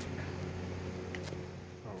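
Steady background hum with a faint steady tone under it, and two light clicks a little over a second in.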